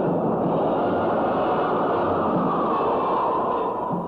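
Jet engine noise from a twin-engine F-4 Phantom on its takeoff run: a loud, steady rushing noise, heard on old film sound.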